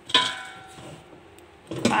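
Air fryer's metal basket knocked once, ringing as it fades, then a few softer knocks as it is handled near the end.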